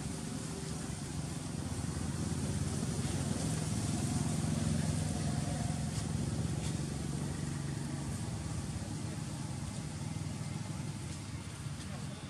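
A motor vehicle engine rumbling low in the background, swelling a few seconds in and then easing off, as if passing.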